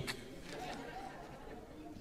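A pause in speech, filled with a faint murmur of voices and room tone in a hall.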